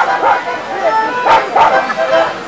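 A dog barking twice in quick succession, over the chatter of a large outdoor crowd.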